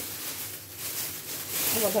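Thin plastic bag rustling and crinkling as hands handle and open it.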